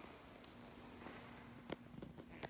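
Near silence: room tone with a faint steady hum and a faint click near the end.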